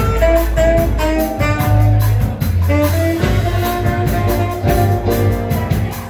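Live jazz combo playing: a saxophone carries the melody over plucked upright double bass and a drum kit keeping a steady cymbal beat.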